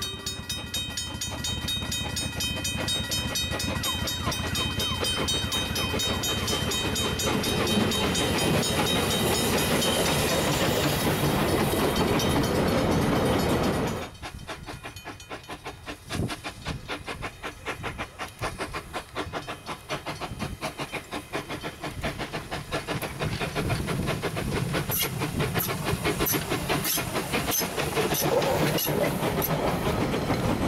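Steam tank locomotive working a train of wooden carriages, its exhaust chuffing steadily as it approaches. About halfway through the sound drops suddenly to a quieter stretch. Near the end come sharp clicks of wheels over rail joints as the carriages roll past.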